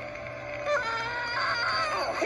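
Film soundtrack played on a TV and picked up by a phone: a low eerie music bed, then about two-thirds of a second in a high, held, wavering cry or shriek rises over it and grows louder.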